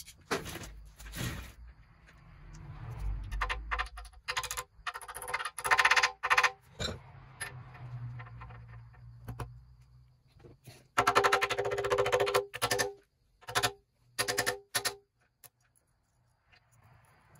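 Irregular metal clinks and taps with a ringing tone as a steel timing sprocket is worked and tapped with a hammer onto the crankshaft nose. The strikes come in scattered clusters, the densest run of quick ringing taps about eleven to thirteen seconds in, with some scraping of metal early on.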